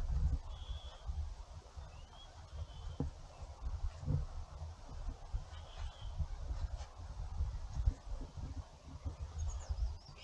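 A few short, high bird chirps, one rising in pitch, over a low, uneven rumble of wind on the microphone.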